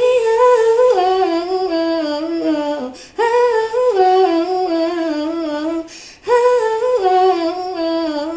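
A young woman's voice singing a wordless melody unaccompanied into a handheld microphone, in three held phrases that step down in pitch, with short breaks for breath between them.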